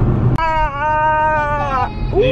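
A high-pitched, pitch-shifted voice from a Snapchat face-filter video on a phone holds one long note for about a second and a half. It starts suddenly about a third of a second in, right after a cut.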